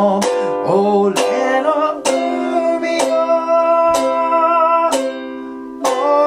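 A man singing to his own strummed ukulele, playing G7 and C chords with about one strum a second. His voice holds long notes with vibrato; one note is held for about three seconds in the middle.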